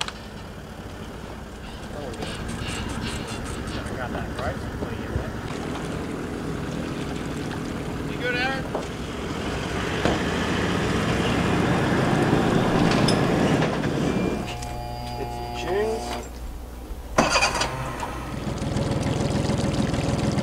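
A 4WD ute's engine running as it drives past, its sound swelling to a peak and fading away. This is followed by a few seconds of steady engine idle.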